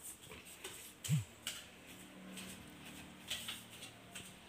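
Footsteps going down indoor stairs, faint: soft thuds and light ticks, with one heavier step about a second in. A faint steady hum runs under the second half.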